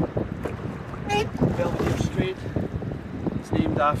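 Wind buffeting the microphone and water rushing along the hull of a single rowing scull under way, with irregular knocks from the rowing stroke. A few short high calls sound about a second in and again near the end.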